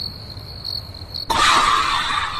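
Crickets chirping steadily as a night ambience. About 1.3 s in, a sudden loud rushing hiss breaks in and slowly fades: a sci-fi sound effect for the alien craft's light appearing.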